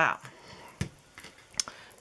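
A plastic tube squeezer being turned along a watercolor paint tube: faint handling noise and two sharp plastic clicks about a second apart.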